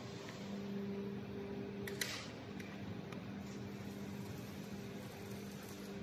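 Steady low hum with an even background hiss, and a single short click about two seconds in.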